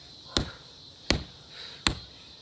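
Backhand punches landing on a free-standing punching bag: three sharp thuds at an even pace, about three-quarters of a second apart.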